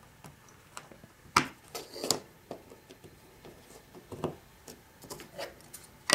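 Irregular small clicks and light knocks of thin pressed-wood pieces being pressed into the slots of a wooden base board, the sharpest two about a second and a half and two seconds in.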